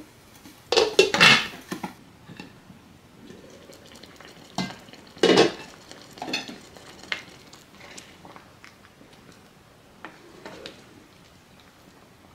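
Glass pot lid clattering down onto a stone countertop about a second in. Then come knocks and scrapes of a wooden spoon against a metal cooking pot as rice and stew are stirred.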